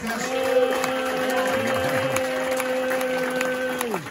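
Audience applauding lightly while one long steady note is held, then falls away just before the end.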